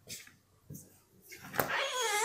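Glass-paned shop door being pushed open: a few light clicks, then a creaking squeal from about a second and a half in, its pitch wavering up and down.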